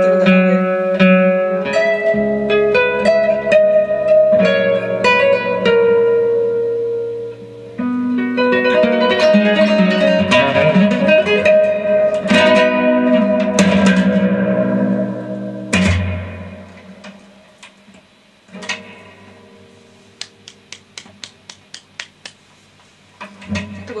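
Ten-string classical guitar (decacorde) played with plucked notes and chords, ending on a loud chord about two-thirds of the way in that rings out and fades. A quiet stretch follows with a series of short, soft clicks.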